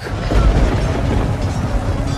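A deep rumbling boom, strongest about half a second in and settling into a steady low rumble, under background music.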